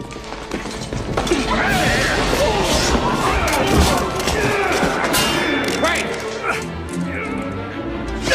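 Movie fight-scene soundtrack: music under men's shouts and grunts, with a string of thuds, whacks and crashes from a scuffle as soldiers are knocked down.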